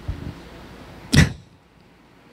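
A single short burst of noise on a handheld microphone about a second in, loud at the bottom and reaching right up to the top, over faint room tone.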